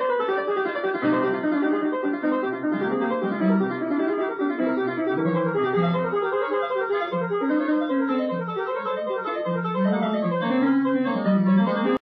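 Piano music, starting abruptly and playing steadily throughout.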